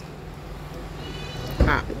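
A woman's short voiced 'ah' near the end, over a steady low hum, with a faint thin high tone shortly before it.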